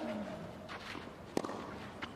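Tennis rally: a racket strikes the ball once, about a second and a half in, with a player's short falling grunt on the shot. A grunt from the previous stroke trails off at the start, and players' footsteps on court run in between.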